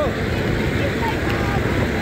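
Steady low rumble of a moving vehicle heard from inside, with faint voices chattering over it.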